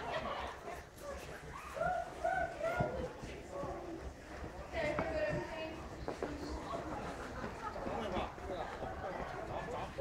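People talking in short phrases, over a steady low rumble.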